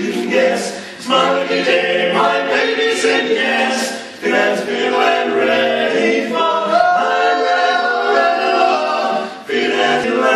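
Male barbershop quartet singing a cappella in four-part close harmony. The singing comes in phrases, with short breaks about a second in, around four seconds and just before the end.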